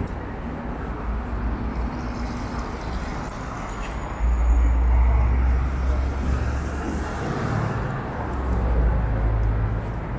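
Steady road traffic on a wide city avenue. About four seconds in, a low rumble swells as a bus passes close by.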